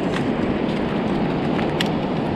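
Steady wind rushing over the microphone on an open beach, with a couple of faint crunches of footsteps on shell-strewn sand.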